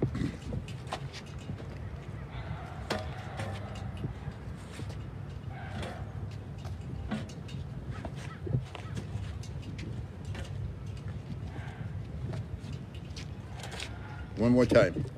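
Steady low wind rumble on the microphone with outdoor traffic noise, broken by a few faint, sharp knocks of strikes landing on the arms of a portable training dummy fixed to a lamp post.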